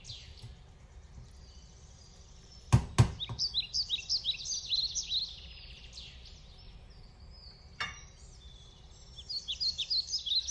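Two sharp knocks in quick succession, a spatula against the stainless steel pan, and one more knock later. Between and after them, birds chirp in quick repeated runs.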